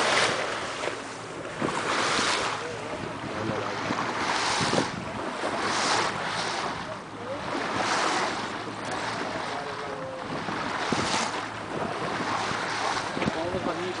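Wind buffeting the microphone over water sloshing and lapping around a small boat on open sea, coming in gusts that swell and ease every second or two.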